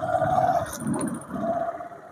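Motorcycle running at road speed, with wind rumbling on the microphone and a steady mid-pitched hum that fades in and out.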